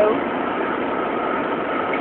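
Steady running noise inside a car's cabin, with the engine running and no sudden events.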